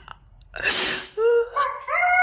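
A short noisy burst about half a second in, then a rooster crowing, starting about a second in as a series of pitched rising and falling calls.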